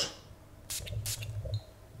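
Perfume atomizer pumped twice in quick succession: two short hisses about a quarter second apart.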